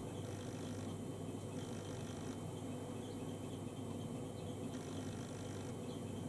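Quiet, steady background noise: a low hum under a faint hiss, with no distinct event standing out.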